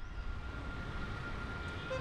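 Distant city traffic: a steady low rumble with a faint, steady high tone held above it.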